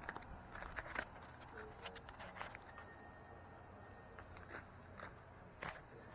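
Faint footsteps on a grass lawn, a scatter of light irregular steps and ticks.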